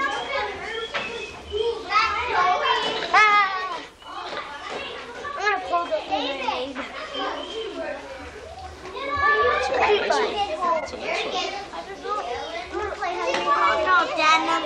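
Kindergarten children's voices chattering and calling out over one another, several high voices at once, with louder stretches a couple of seconds in and again around the ten-second mark.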